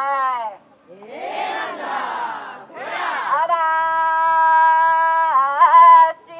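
Kiyari festival work song: a solo singer's long held note falls away, the crowd answers with two loud group shouts, then the singer takes up another long, steady note that wavers in an ornament near the end.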